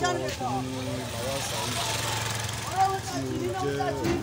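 A man talking over a steady vehicle engine running in the background, with a swell of road noise through the middle.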